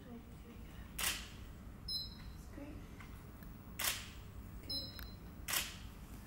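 Camera shutter firing three times during a studio photo shoot, each shot a sharp click. About a second after each of the first two, a short high beep sounds: the studio flash signalling that it has recharged.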